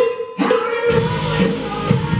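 Two ringing cowbell strikes, the second about half a second in, then a full rock band comes in about a second in: distorted guitars, singing and drum kit.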